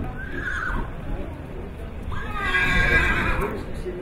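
A horse whinnying: a short call with a falling pitch just after the start, then a longer, louder whinny about two seconds in.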